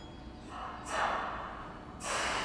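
A hiss of compressed air from a Y500-series commuter train standing at the platform. It begins about half a second in, swells sharply near one second, then fades, and a second burst starts near the end. This is the sound of the air brakes releasing just before the train pulls out.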